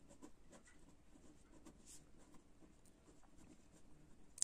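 Faint scratching of a pen writing a word by hand on paper, a quick string of short strokes.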